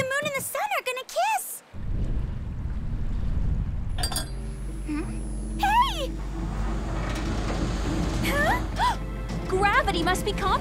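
Animated cartoon soundtrack: short startled vocal gasps in the first second and a half, then a low rumble sets in under dramatic background music, with more brief startled cries around six and nine seconds.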